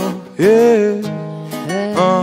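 Acoustic guitar strumming with a voice singing along; the sung notes swoop upward twice, shortly after the start and again near the end.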